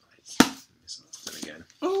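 A single sharp knock about half a second in as a hardcover book is handled out of a torn-open cardboard mailing box, followed by fainter handling sounds.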